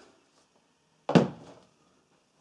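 Quiet room, then a single sharp knock about a second in that dies away within half a second.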